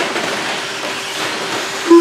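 Electric 13.5-turn brushless short-course RC trucks racing on a clay track: a steady rushing whir of motors and tyres. A short tone sounds near the end.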